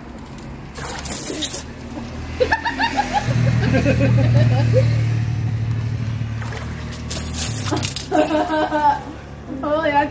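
Voices with water sloshing and splashing in a small tarp-lined pool. There are two short bursts of hiss, about a second in and again about seven seconds in, and a steady low hum through the middle.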